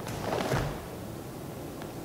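Karate uniform swishing as a fast punch is thrown about half a second in, with a soft low thud of the body's movement on the mat.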